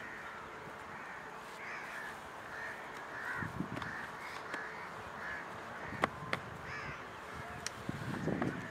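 Birds calling over and over, short arched calls about two a second, with the soft dull sounds of wet mud being scooped and pressed by hand underneath.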